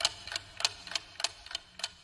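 Clock ticking sound effect, about three sharp ticks a second, counting down the time to answer a quiz question.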